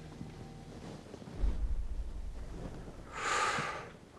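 A person blowing out a short, hissy breath near the end, after a low rumble about a second and a half in.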